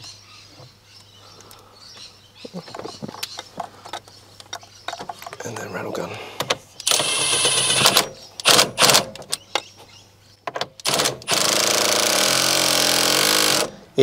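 Cordless impact tool tightening the steering wheel's centre nut onto the column. It makes a short run about seven seconds in, a few brief blips, then a longer run of about two and a half seconds near the end. Before that come faint clicks of the wheel being seated.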